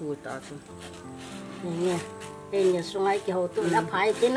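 Background music with long held notes, a woman talking over it in the second half.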